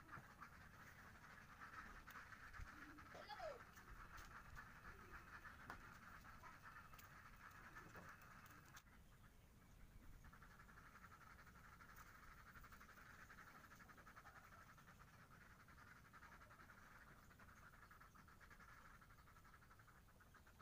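Near silence: faint steady background buzz, with a few light clicks in the first few seconds.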